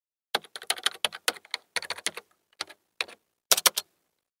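Computer keyboard typing: quick runs of key clicks in several short clusters, starting about a third of a second in and stopping just before the end.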